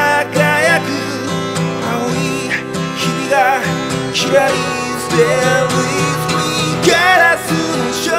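A solo voice singing a Japanese pop song in Japanese, with vibrato on held notes, over a backing of guitar and a pulsing bass line.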